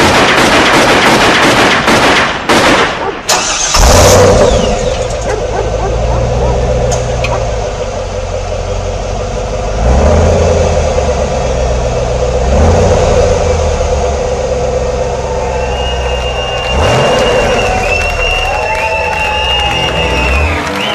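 A rapid burst of loud cracks like gunfire for the first three seconds or so, followed by a car engine running and revving up three times, about ten, twelve and seventeen seconds in. This is a sound-effects intro played over the PA. High whistling tones come in near the end.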